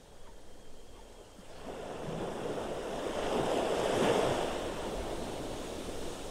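Waves washing, with wind: a rushing sound that swells from about a second and a half in, peaks near four seconds, then eases off.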